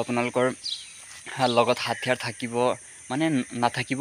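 Mostly a man's speech in short phrases with pauses; beneath it, a steady high-pitched insect drone.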